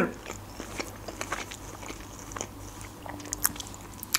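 Soft, close-miked mouth sounds of chewing food: scattered small wet clicks and smacks between pauses in talk.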